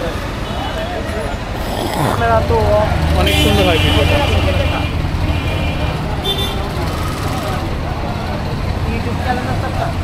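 Busy street traffic: engines of cars and auto-rickshaws running close by, with the low engine rumble swelling a few seconds in. Voices of passers-by are mixed in, along with short high-pitched beeps about three to four seconds in and again near six seconds.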